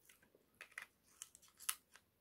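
Close-up eating of seafood-boil shellfish by hand: a run of small crackles and clicks as shell is cracked and picked at the mouth, with the sharpest crack near the end.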